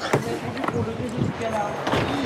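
Background voices talking, with two sharp knocks: one right at the start and one near the end.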